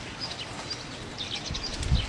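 Faint bird chirps over steady outdoor background noise, with a low rumble rising near the end.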